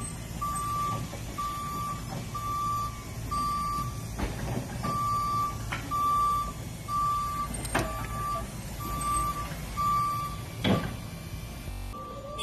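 Raymond electric forklift's warning alarm beeping at an even pace, about one single-pitched beep a second, over a low rumble. A few short knocks come about a third of the way in, near the middle, and near the end.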